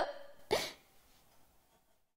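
One short, breathy vocal sound from a young woman about half a second in, a quick giggle or exhaled breath, followed by near silence.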